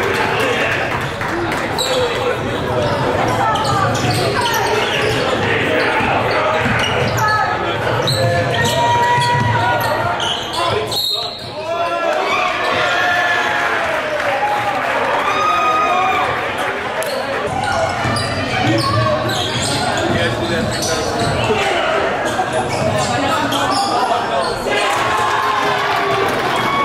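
A basketball bouncing on a hardwood gym floor amid the echoing voices of players and spectators during live play. There is a brief drop in sound about eleven seconds in.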